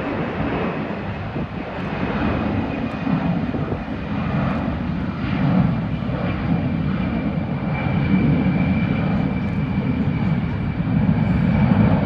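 Boeing C-17 Globemaster III climbing out after takeoff, its four Pratt & Whitney F117 turbofan engines making loud, continuous jet noise: a deep rumble under a steady high whine, growing a little louder toward the end.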